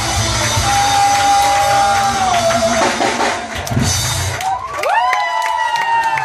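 Live rock band with drums and guitar playing, heard over a crowded room: a long held note about a second in that slides down at its end, then notes bending sharply upward and held near the end.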